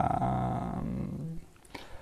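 A man's drawn-out hesitation vowel, a low held 'euh' in French, fading out after about a second and a half into quiet room tone.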